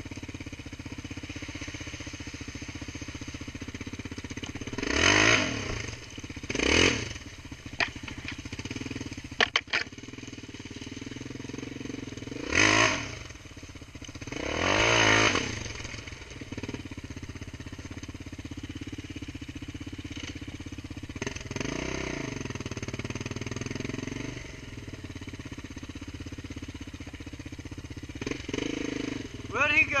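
ATV (quad) engine running steadily while being ridden along a dirt trail, rising in four loud surges in the first half as the throttle is opened. A short shout comes right at the end.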